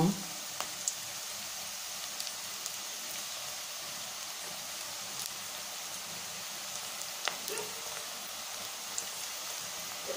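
Cashew pakoda deep-frying in hot oil in an aluminium kadai: a steady sizzle, with a few sharp pops from the oil.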